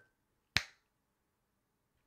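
A single short, sharp click about half a second in, with near silence around it.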